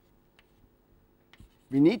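Chalk writing on a blackboard: a few faint, short taps and scratches, then a man's voice starts near the end.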